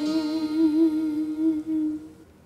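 A singer's voice holding one long hummed final note with vibrato over a faint ringing chord, stopping suddenly about two seconds in as the song ends.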